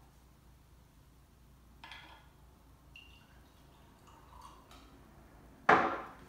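Glass jars and a drinking glass handled on a kitchen counter: a few faint knocks and a brief clink, then one sharp, loud knock of glass set down near the end.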